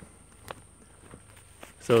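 Faint footsteps of a person walking over grass and a dirt path, a few soft scuffs and ticks.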